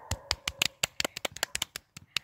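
A quick, irregular series of sharp clicks and crackles, about a dozen in two seconds.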